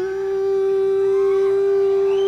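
Electric lead guitar sliding up sharply into one long sustained note, held steady, with the band faint beneath.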